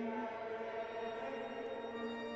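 A chanted liturgical line ends and its held note fades in the church's reverberation. A faint, steady pitched drone carries on underneath.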